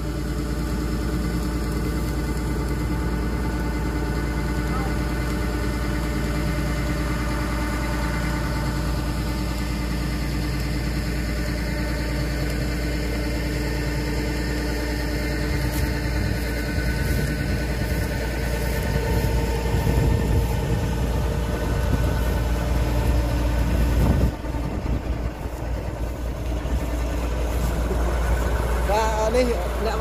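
Kubota DC-105X combine harvester's diesel engine running steadily, a constant low drone with a steady hum over it. The sound shifts briefly about three-quarters of the way through, then carries on.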